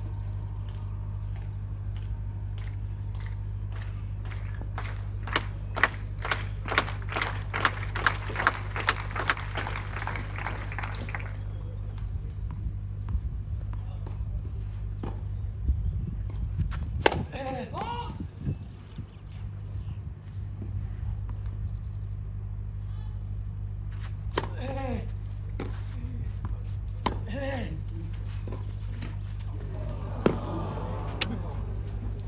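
Spectators applauding between points at a clay-court tennis match, with a few loud claps close by, for several seconds before the applause stops suddenly. Later come a few sharp tennis-ball strikes of a rally and a crowd's "Oh!" in reaction.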